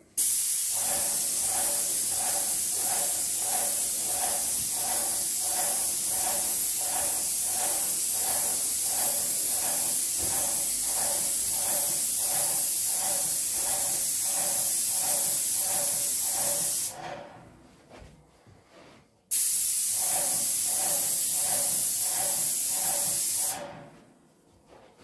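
Graco airless paint sprayer spraying through its tip: a loud, steady hiss with a regular pulsing under it. The spray cuts off about two-thirds of the way through, starts again a couple of seconds later, and stops just before the end as the trigger is released.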